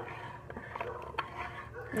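Metal spoon stirring coffee in a ceramic mug, with a few light clinks against the side of the mug, the sharpest about a second in.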